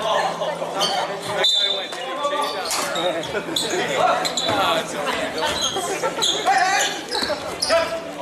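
Basketball bouncing on a hardwood gym floor during play, several sharp bounces ringing in the large hall, over steady talk from spectators.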